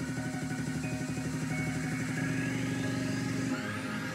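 Music from a DJ mix playing on the djay app, with a fast, even pulse in the low end and a rising sweep in pitch over the second half.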